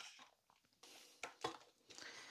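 Faint crinkling of a clear plastic bag and light clicks of a metal drive-adapter bracket being unpacked and set down, with two sharper ticks past the middle.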